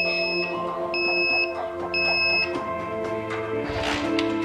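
Piezo buzzer on a homemade RFID anti-theft circuit board beeping three times, about once a second, each beep a steady high tone lasting half a second, over background music.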